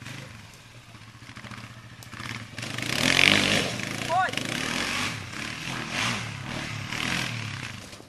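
Sport ATV (quad) engine running and revving as it accelerates around a dirt track. It swells to its loudest about three seconds in and stays up before easing off near the end.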